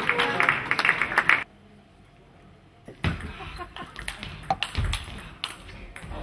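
Crowd applauding and calling out in a large hall, cut off suddenly about a second and a half in. After a short silence, a table tennis rally: the ball clicking off the rackets and the table a couple of times a second, with a few low thuds.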